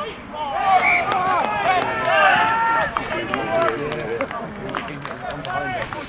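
Several people shouting and calling out at once during a rugby match, loudest and most crowded in the first half, then thinning to scattered calls. Sharp clap- or knock-like sounds are scattered throughout.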